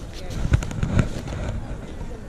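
Clothes and their hangers handled on a clothing rail close to the microphone: a few sharp knocks and clicks, the loudest about half a second and one second in, with rustling between them and voices in the background.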